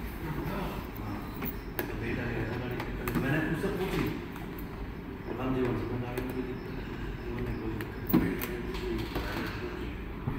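Indistinct background talking by other people, over a low steady hum, with a few short, sharp clicks or knocks.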